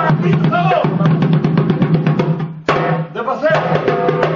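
Live vallenato music: men singing over a small hand drum beating a quick, steady rhythm. The sound drops out briefly about two and a half seconds in, then the drumming and singing start again.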